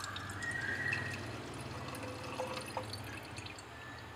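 Toluene being poured into a glass round-bottom flask: a faint trickle and splash of liquid into glass, with a slight rising note in the first second.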